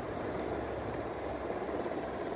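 Steady background noise: a low hum under an even hiss, with two faint ticks in the first second.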